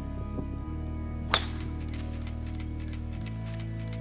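A single crisp click of a golf club striking the ball, about a second in, over background music with steady low chords.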